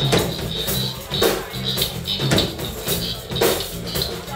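Live funk and soul band playing a groove, with a strong drum hit about once a second over steady bass notes.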